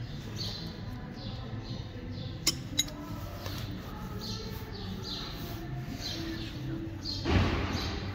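Engine bearing shells and caps being handled: two short sharp clicks about a third of a second apart, a little over two seconds in, over low steady background noise, and a brief rustling burst near the end.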